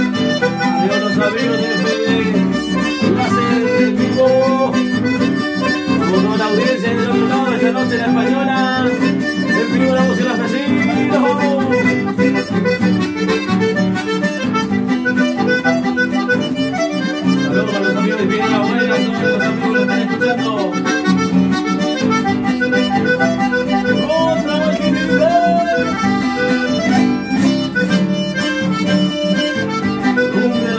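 Red accordion playing an instrumental melody over sustained chords, accompanied by strummed and plucked guitars, in a steady, unbroken passage.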